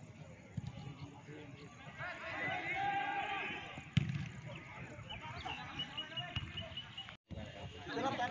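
Sideline spectators' voices talking and calling out during a football match, loudest a couple of seconds in. A sharp knock comes about four seconds in, and a short run of quick high peeps follows soon after.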